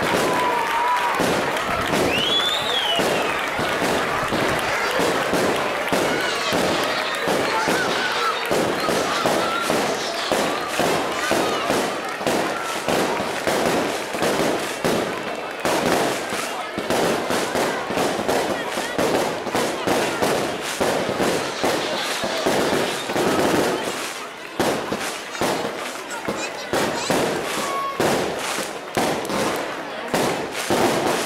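A large seated crowd applauding, with voices and a short whistle-like call mixed in; the clapping thins out over the last few seconds.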